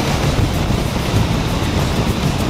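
Steady wind rush and motorcycle running noise at an even cruising speed, heard from a camera mounted on the moving bike.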